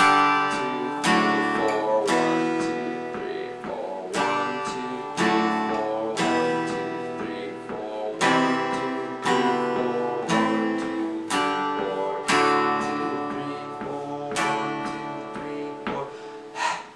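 Steel-string acoustic guitar strummed through a chord progression of C, E minor 7 with B in the bass, A minor, G, then D, with full chords ringing. A hard accented strum falls about once a second, with lighter strums between.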